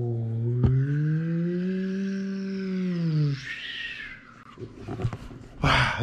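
A man's long, drawn-out "ohhh", held for about four seconds, its pitch rising and then falling. After it come a few soft knocks and a brief rush of noise near the end.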